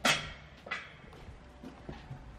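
Camera handling noise: a sharp knock right at the start that dies away quickly, a softer knock less than a second later, and faint rustling and ticks.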